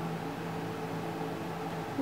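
A steady low machine-like hum with a faint hiss.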